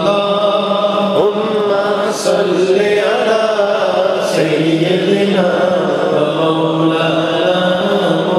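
A man reciting naat into a microphone in a chanted, sung style, drawing out long wavering notes with slow glides in pitch, over a steady low held tone.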